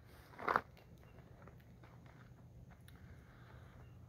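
A brief sound about half a second in, then faint crunching footsteps in dry leaf litter.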